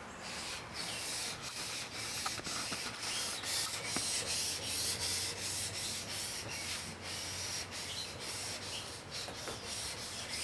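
A steel drawknife blade being rubbed back and forth on a 1200-grit waterstone in repeated quick strokes. The flat back of the blade is being honed to remove the scratches left by the 800-grit stone.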